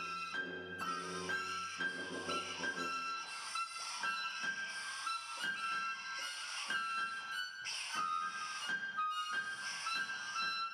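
Contemporary chamber ensemble playing: high, held flute-like tones alternating between two close pitches over a hissing, airy texture broken by short irregular noise strokes. Low sustained notes underneath drop out about three seconds in.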